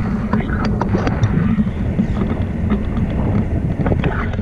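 Flight wind buffeting the microphone of a pole-mounted camera during a tandem paraglider flight, a steady low rumble with scattered sharp clicks and taps.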